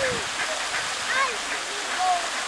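Steady rushing and splashing of a pond fountain's jet falling back onto the water, with a few short, distant pitched calls over it.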